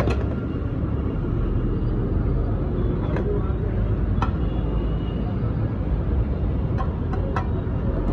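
Steady low rumble at a street-food stove, with a few sharp clicks of a metal spatula against a frying pan, several of them close together near the end.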